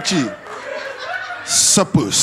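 A stand-up comedy crowd chuckling and laughing, with a man's voice on a stage microphone that gives two short, loud hisses near the end.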